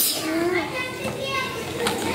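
Faint child's voice, with short crisp clicks of notebook paper being handled as pages are turned.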